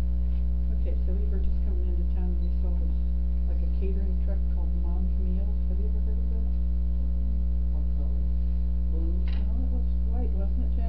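Loud, steady electrical mains hum throughout, with a faint murmur of indistinct voices under it and a single click near the end.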